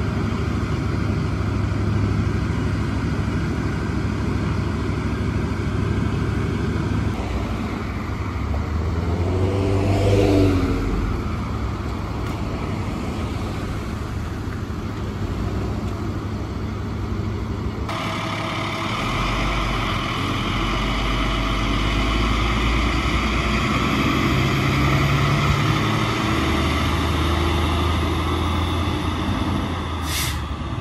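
Emergency vehicles' engines running at low speed on a street, with steady traffic noise. A vehicle's engine rises then falls in pitch as it drives past about ten seconds in. The background changes abruptly twice.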